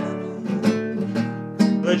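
Classical acoustic guitar strummed in a steady rhythm, about two strums a second, between sung lines; a male voice comes back in singing near the end.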